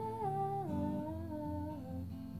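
A male voice humming a wordless melody that steps down in pitch twice, over an acoustic guitar being strummed.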